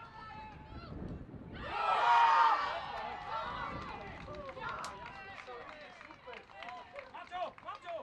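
Young players and sideline spectators shouting and cheering as a goal is scored in a youth football match, loudest about two seconds in, then breaking up into scattered short shouts and calls.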